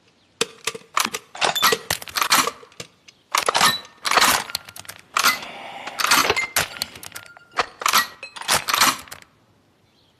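A rapid, irregular series of sharp clinks and clattering impacts with brief ringing tones, like metal objects knocking together, coming in bursts and stopping about a second before the end.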